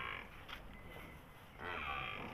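A water buffalo heifer gives a quiet, low grunt near the end, over faint background.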